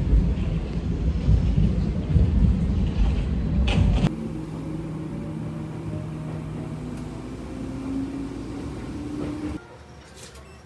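A heavy low rumble for about four seconds, then the steadier rumble of a train carriage in motion, with an electric motor whine rising slowly in pitch as the train speeds up.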